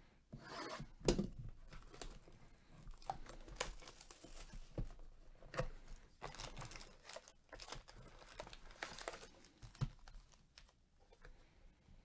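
Plastic shrink wrap being torn off a sealed trading-card hobby box and crumpled, in a run of irregular crinkles and crackles, loudest about a second in, with a few light knocks of cardboard and packs being handled.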